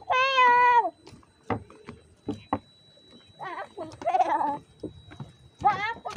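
A child's high-pitched wordless squeal lasting about a second. Shorter cries follow around four seconds in and again near the end, with light footsteps tapping on wooden boardwalk planks between them.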